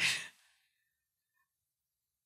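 A short, breathy hesitation 'uh' from a person's voice that trails off within the first half second, then complete silence.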